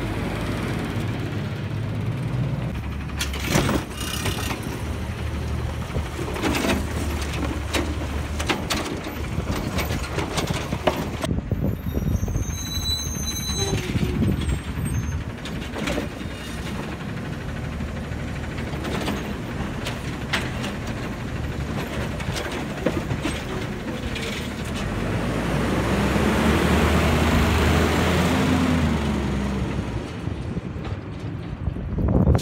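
Heil automated side-loader garbage truck with a CNG engine running while the hydraulic arm lifts and dumps curbside carts, with repeated clanks and knocks of the carts and arm. There is a brief high-pitched squeal about twelve seconds in. Near the end the engine grows louder as the truck pulls away.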